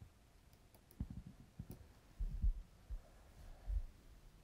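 Faint, irregular low thumps and soft clicks from a stylus and hand working on a writing tablet.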